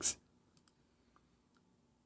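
A spoken word trailing off, then near silence with a few faint, sharp little clicks.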